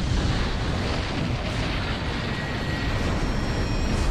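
Sound effect of a huge bomb explosion in an animated cartoon: a long, rumbling blast with a deep low end that holds steady rather than dying away.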